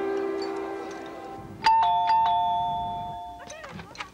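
A doorbell chime rings once about a second and a half in: a two-note ding-dong, a higher note then a lower one, each ringing on and fading. Before it, a held music chord fades out.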